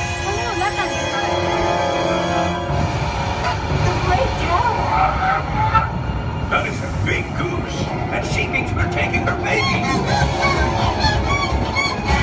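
Themed ride music and voices over the steady low rumble of the coaster train running along its track.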